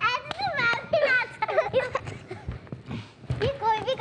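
Children's high-pitched voices calling out excitedly, with a few short knocks mixed in.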